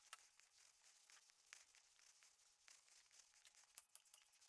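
Near silence: room tone with faint scattered ticks.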